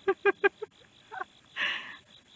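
A person laughing: a quick run of about five short "ha" pulses, then a breathy laugh-out near the end.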